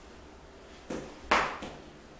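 Two short knocks about a second in, the second one louder with a brief ring-out, then a faint tap: objects being set down or handled in a small room.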